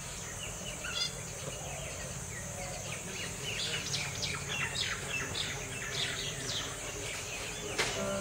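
Birds chirping in many short, quick, falling notes, busiest from about three seconds in, over a steady high insect drone.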